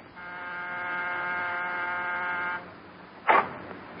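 Electric doorbell buzzer sounding one steady buzz for about two and a half seconds. A short, louder sound follows about three seconds in.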